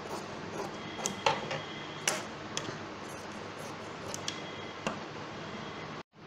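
Large fabric shears cutting through cloth backed with fusing paper: a handful of irregular sharp snips, a few with a brief thin metallic ring from the blades.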